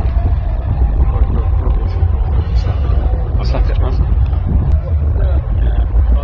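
Indistinct voices of people talking, over a steady, heavy low rumble that is the loudest sound.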